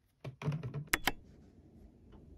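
A quick clatter of hard plastic taps and clicks from an Apple Pencil against an iPad, ending in two sharp clicks about a second in, then a faint steady room hum.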